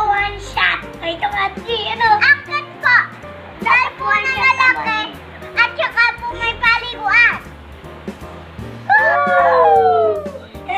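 Young children shouting and laughing as they play, with background music underneath; near the end one long, loud call falls in pitch.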